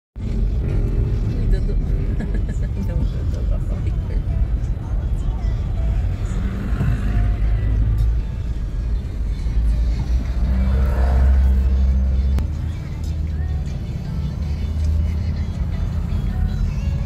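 Car cabin noise from a moving car: a steady low engine and road rumble, with music playing from the car stereo and voices mixed in.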